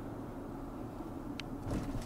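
Steady low rumble of a moving car heard from inside the cabin, with one faint tick a little past halfway.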